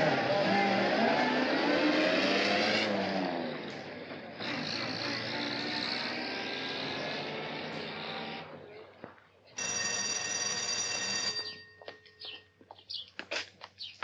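A 1940s school bus pulling away, its engine note rising as it accelerates, breaking off about three seconds in, then running steadily before fading out about nine seconds in. A brief sustained tone follows, then birds chirping near the end.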